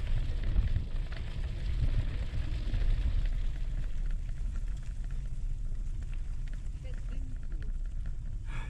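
Wind rumbling on an action-camera microphone over the tyre noise of a gravel bike rolling slowly on a muddy, leaf-strewn dirt track. The noise is heavier in the first half, then eases to a lighter crackle.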